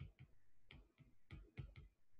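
Stylus tip tapping on a tablet's glass screen during handwriting: a faint, irregular run of sharp ticks, about three or four a second.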